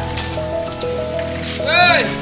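Background music: a melody of held, stepping notes. Near the end, a short call rises and falls in pitch.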